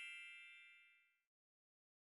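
Faint, fading tail of a bell-like chime sound effect that rings out and dies away within the first half second, followed by silence.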